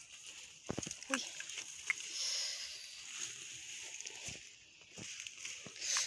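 Leaves rustling and feet shuffling through a bean plot, with a woman's short pained 'ui' about a second in as something pierces her sandalled foot.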